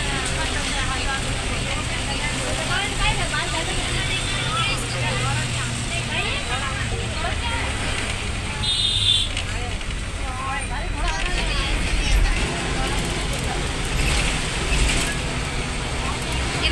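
City bus in motion, heard from inside at the front: a steady low engine hum with road and traffic noise, under indistinct voices. A short high beep sounds about nine seconds in.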